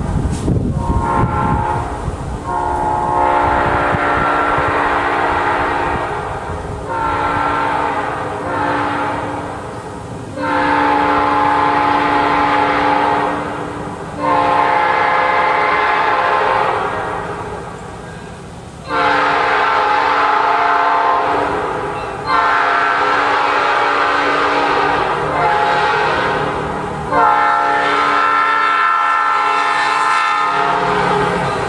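Nathan Airchime P5 five-chime locomotive horn of the newer cast, blown in a long run of loud chord blasts. Several blasts are held for three to four seconds, with short breaks between them.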